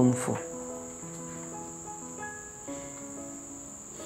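Crickets chirping in a steady high-pitched drone. Underneath is a soft background score of slow, held notes.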